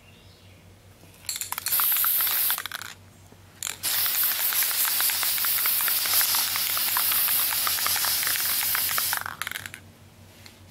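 Aerosol can of flat black spray paint hissing as it mists a light guide coat onto primed motorcycle fairings. There is a short burst of about a second and a half, a brief puff, then a long burst of about five seconds.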